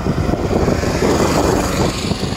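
A small car driving past close by, its engine and tyre noise swelling to a peak about a second and a half in and then falling away.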